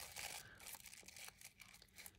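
Faint rustling and a few soft crinkles of layered sewing-pattern tissue paper as fingers rub and separate its edges.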